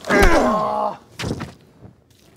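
A sharp blow, then a person groaning, the groan falling in pitch and lasting just under a second; a shorter sound follows about a second later.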